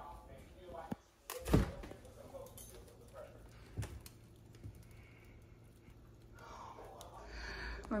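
Knocks and clunks of containers and shelves being handled in an open refrigerator during a clean-out, with one louder thump about a second and a half in and a couple of light clicks after.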